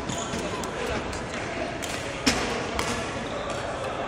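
Badminton rackets hitting shuttlecocks in a reverberant sports hall, a string of sharp clicks, the loudest about two and a quarter seconds in, over indistinct voices.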